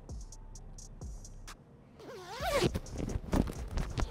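Zipper of a textile armoured riding jacket being engaged and pulled up: faint clicks as it catches, then a quick rasping run of the teeth in the second half.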